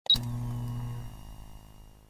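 A short logo-intro sound effect: a sudden hit with a brief bright high ping, then a low sustained tone that fades out over about two seconds.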